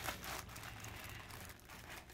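A few faint crinkles of plastic packaging as wrapped food packets are handled, over low room noise.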